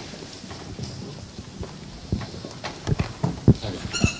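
A handheld microphone being picked up and handled: a run of low knocks and bumps, busiest in the second half, with a short ringing clink at the very end.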